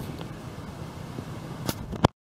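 Outdoor city street noise: a steady low rumble of traffic with hand-held camera handling, a sharp click near the end, then the sound cuts off abruptly.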